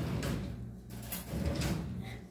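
A kitchen drawer sliding, with a few short clicks and clatters of utensils as a spoon is taken out.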